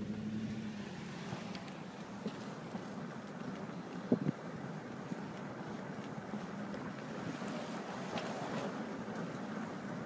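Car driving over snow: a steady low hum with tyre noise, and one sharp knock about four seconds in.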